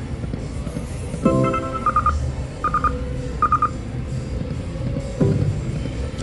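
Electronic slot machine sound effects. A chime comes about a second in, then three short clusters of high beeps roughly a second apart, while the reels spin to a new result, over a steady casino background hum.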